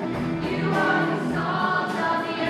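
Several girls' voices singing a musical-theatre song together over accompaniment with a steady beat, holding long notes.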